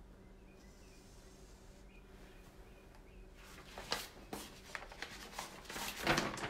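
A large sheet of paper being handled, rustling and crinkling, with several sharp crackles in the last two seconds; before that only a faint steady hum.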